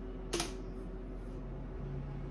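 A single sharp click about a third of a second in, over a faint steady low hum; a faint low drone comes in about a second and a half in.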